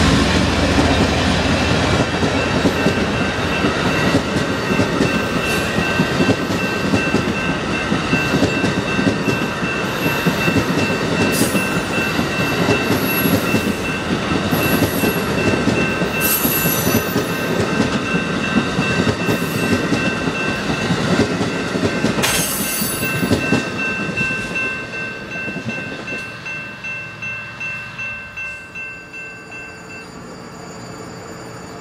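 Amtrak passenger train passing close by: the diesel rumble of a GE P42DC locomotive drops away in the first second or two, then bi-level Superliner cars roll past with the wheels clicking over rail joints and a few brief wheel squeals. The sound dies away over the last few seconds as the train goes by.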